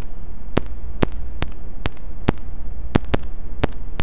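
Electronic glitch noise: sharp digital clicks at uneven intervals, about two a second, over a steady low hum and hiss.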